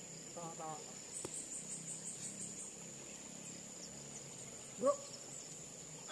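Steady high-pitched insect drone at a tropical riverside, with a quick run of high chirps about a second in. Brief snatches of distant voices come near the start and, loudest, about five seconds in.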